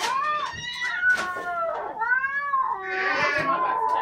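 A cat meowing in a run of about four drawn-out calls that rise and fall in pitch, the last one harsher, heard through a TV's speaker.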